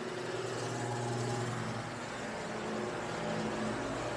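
Steady low hum of running machinery, an even drone with a faint airy hiss and no sudden sounds.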